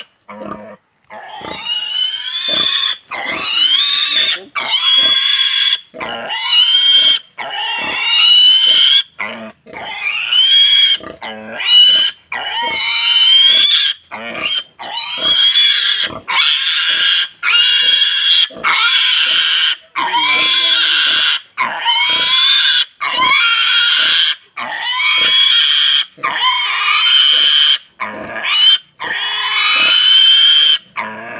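A pig squealing over and over: loud, high-pitched squeals about a second long each, one every second or two, with short breaks between them.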